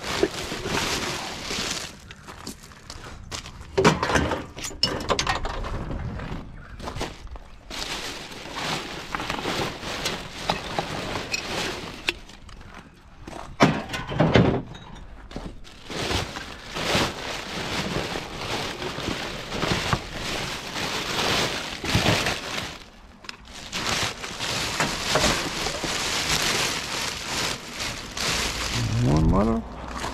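Gloved hands rummaging through plastic garbage bags in a wheelie bin: bin liners rustling and crackling as rubbish is shifted, with occasional knocks of items such as bottles and cans being moved.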